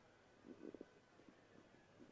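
Near silence: faint background hiss, with a brief faint voice-like murmur about half a second in.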